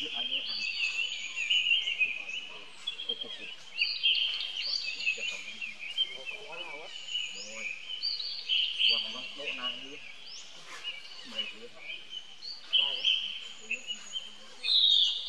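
Many small birds chirping and twittering together in a continuous, busy chorus of short high calls, with faint voices now and then underneath.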